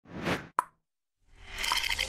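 Intro animation sound effects: a short swell and a sharp pop, a brief silence, then a noisy effect that starts about a second and a half in and grows louder.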